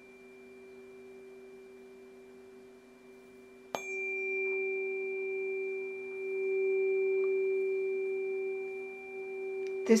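A tuning fork's pure steady tone rings softly, then the fork is struck again nearly four seconds in. A sharp click is followed by a much louder sustained note with faint higher overtones, which swells and ebbs and eases off slightly near the end.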